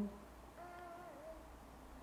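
A child's faint, high-pitched voice giving one drawn-out answer, its pitch dipping near the end, over a low steady room hum.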